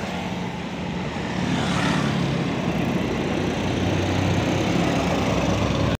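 A Suroboyo city bus's engine running as it drives past close by, getting louder in the first couple of seconds and staying loud, amid road traffic.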